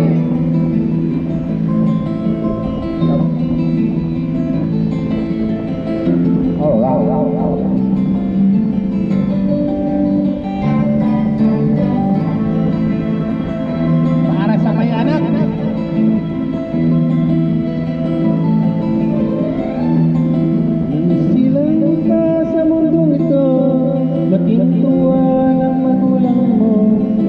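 Instrumental backing music led by guitar, played from a phone held up to a microphone: the introduction of a song before the singing starts.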